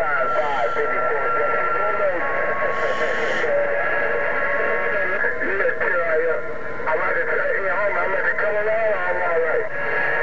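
Distant stations' voices coming through a President HR2510 radio's speaker, unclear under a steady hiss of static. Steady whistles sit over the voices and change pitch a few times.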